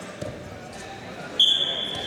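A referee's whistle blown in a long, shrill blast about one and a half seconds in, stopping the wrestling action. Before it, a dull thump of wrestlers' bodies hitting the mat.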